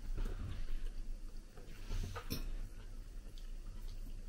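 Quiet eating at a table: chewing, with a few faint clicks of forks against ceramic bowls, one sharper about two seconds in.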